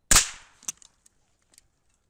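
A single shot from a Chiappa Little Badger rimfire break-action rifle, loud and sharp and dying away within about half a second. A sharp metallic click follows about half a second later, then a few faint ticks.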